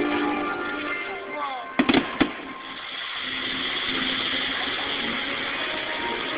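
Aerial firework shells bursting: three sharp bangs in quick succession about two seconds in, over the show's music, which then gives way to a steady rushing background. Heard through a phone's microphone, thin and dull.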